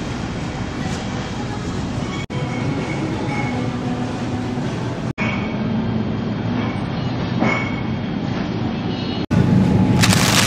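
Steady supermarket background noise: a low rumbling hum of the store's ambience around the refrigerated produce cases. It drops out for an instant three times, about two, five and nine seconds in.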